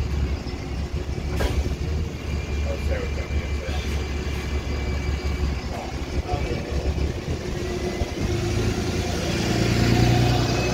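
Diesel bus engine idling at a stop with a steady low rumble and a single sharp click about a second and a half in. Toward the end a bus engine grows louder as it pulls away.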